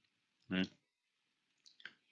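A man's voice utters one short syllable about half a second in, followed by a few faint clicks near the end.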